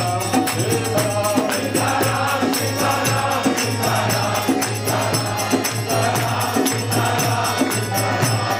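Devotional group chanting (kirtan): many voices singing together over a steady beat of jingling hand percussion, with a sustained low drone underneath.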